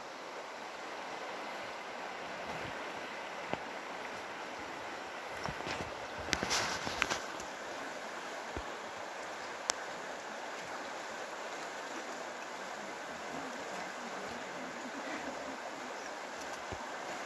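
Steady rush of a river running over a rocky bed, with a brief spell of rustling and clicks about six to seven seconds in.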